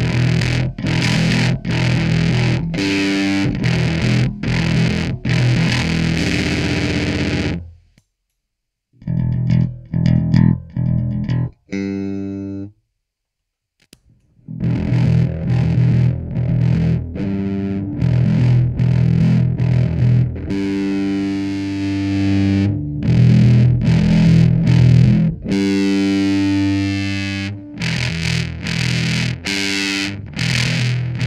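Ibanez SR300E electric bass played through a fuzz pedal into a Fender Rumble bass amp: thick, heavily distorted riffs of held and repeated notes. The playing breaks off about eight seconds in, a short phrase comes in the gap, and after another pause of a couple of seconds it resumes and runs on.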